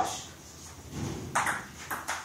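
Table tennis ball being hit back and forth, with a few short, sharp clicks of the ball off the paddles and table in the second half.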